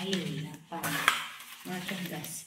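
Clear plastic packaging crinkling and rustling as wrapped vacuum cleaner parts are lifted and handled, in a few crackly bursts.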